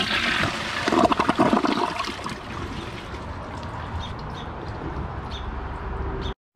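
TOTO Drake toilet flushing: a loud rush of water swirling down the bowl, strongest in the first second and a half, then easing to a quieter, steady run of water.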